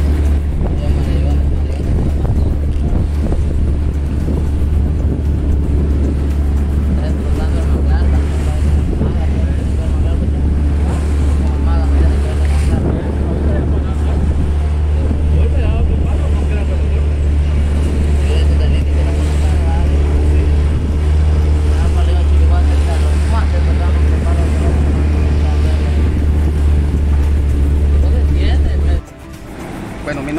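Motor of a small open boat running steadily under way over choppy water, a loud even drone with wind and water noise; it cuts off suddenly near the end.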